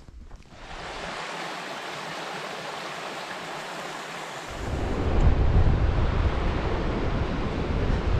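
Small rocky creek rushing over stones, a steady hiss of water. About halfway through it gives way to louder surf breaking on the shore, with wind rumbling on the microphone.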